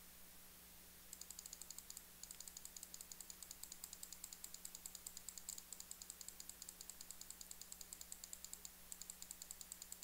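Faint, rapid clicking at a computer, about nine clicks a second, stepping a video forward frame by frame. The clicking breaks briefly about two seconds in and stops near the end, over a faint steady hum.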